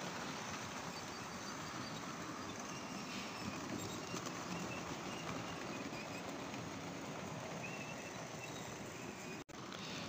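Model locomotives and coaches running on the layout's track: a steady whirr and rattle of motors and wheels on the rails.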